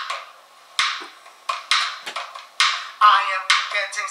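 A man laughing in short breathy bursts that turn into voiced laughter about three seconds in.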